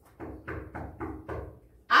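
Five knocks by hand on a hard surface, evenly spaced about three a second, standing in for a knock at a door.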